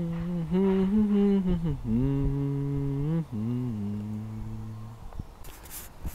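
A man humming a slow tune in long held notes, the phrase stepping down in pitch, stopping about five seconds in. A brief rustle follows near the end.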